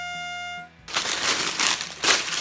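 The final held note of a short rising musical sting, ending under a second in, followed by plastic bags of LEGO bricks crinkling and rustling loudly as they are handled.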